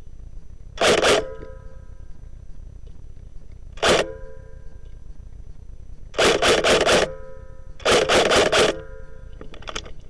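Airsoft G36 rifle firing: a short burst about a second in, a single shot just before four seconds, then two bursts of about six shots each around six and eight seconds in.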